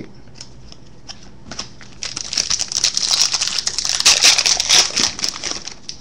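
Foil wrapper of a 2011 UFC Finest trading card pack crinkling as it is torn open and pulled off the cards, a dense crackle from about two seconds in until shortly before the end. Before it there are a few light clicks as cards are handled on the desk.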